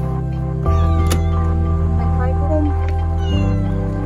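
A young cat meowing from inside its pet carrier, with background music playing throughout.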